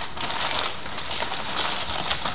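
Aluminium foil crinkling and crackling continuously as it is pressed and crimped down around the rim of a baking dish to seal it.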